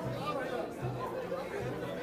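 Crowd chatter: many people talking at once in overlapping, indistinct conversation.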